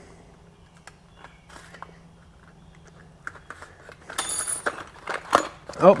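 A small paperboard box being opened by hand. A few faint clicks, then about four seconds in a louder scrape and rustle of the card flaps, followed by light clicks and knocks as a small metal pry bar is taken out.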